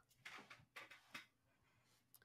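Near silence: room tone with a few faint, brief soft sounds in the first half.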